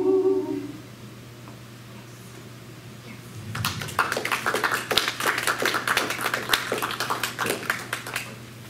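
Four unaccompanied voices hold the final chord of an a cappella song, which fades out under a second in. After a short lull, an audience applauds from about three and a half seconds in.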